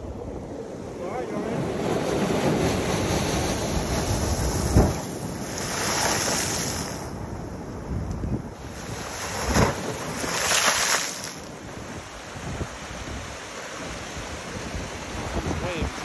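Sea waves breaking and washing over a rocky shoreline, with wind buffeting the microphone. The hiss of the surf swells up twice, about six and ten seconds in.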